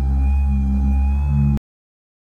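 Cordless buffer polisher running at a steady speed, a low hum with a thin whine above it. It stops abruptly about a second and a half in.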